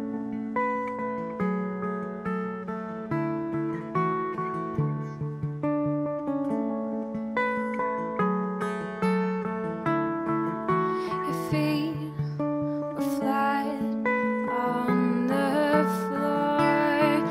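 Acoustic guitar picked in a steady flowing pattern of single notes. A woman's voice comes in singing about two-thirds of the way through, over the guitar.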